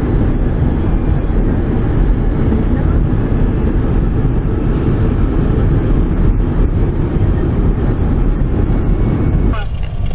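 Loud, steady low rumble of a vehicle on the move, which drops away abruptly near the end.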